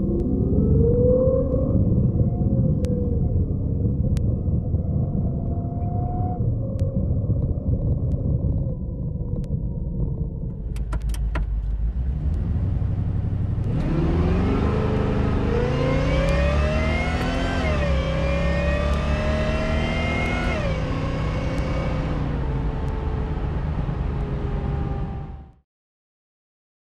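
Supercharged Oldsmobile Cutlass V8 heard from inside the cabin, rolling at low speed. About 14 seconds in it pulls hard under full throttle, its pitch climbing and dropping back at each upshift. After about 20 seconds the revs fall away as the driver lifts off, by his own account too soon, and the sound cuts off suddenly just before the end.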